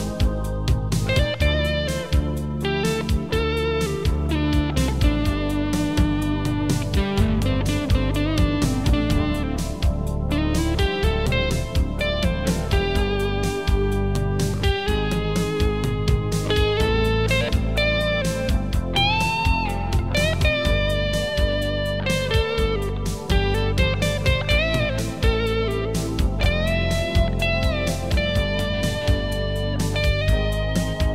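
Instrumental break in a country-rock song: an electric lead guitar plays a solo with bent, gliding notes over bass and a steady drum beat.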